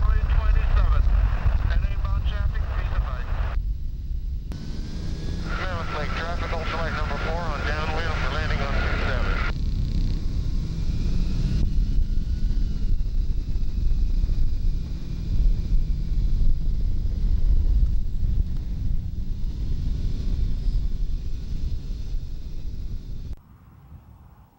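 Ultralight trike in flight, heard from a wing-mounted camera: the engine drones under heavy wind rumble on the microphone. A voice with wavering pitch rises over it twice in the first ten seconds. The sound drops away suddenly just before the end.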